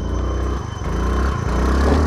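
Small scooter engine running as the scooter rides past close by, a low rumble that grows louder toward the end.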